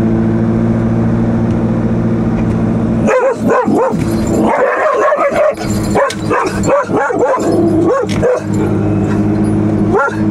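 Standard poodle barking and yipping in a car cabin: a quick run of about a dozen short calls starting about three seconds in and stopping near the end. The car's engine drones steadily under it.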